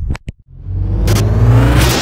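Two short clicks at a cut, then a loud car engine revving up, rising steadily in pitch under crackling, static-like glitch noise: an engine-rev sound effect opening a logo sting.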